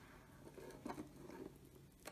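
Near silence: faint room tone with a low hum and a couple of soft rustles about a second in.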